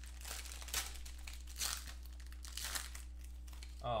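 Gold foil wrapper of a 2015 Black Gold football card pack crinkling and tearing as it is opened by hand, in irregular crackles with a few sharper rips.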